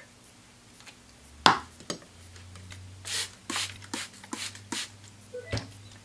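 Felt-tip marker being used on a steel shear blade: a sharp click about a second and a half in, then several short scratchy strokes of the marker across the metal, and a knock near the end.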